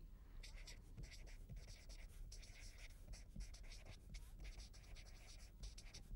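Felt-tip marker writing on paper: a run of faint, quick scratching strokes as words are written out.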